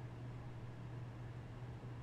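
A steady low hum over faint even hiss, with no distinct event: quiet room tone.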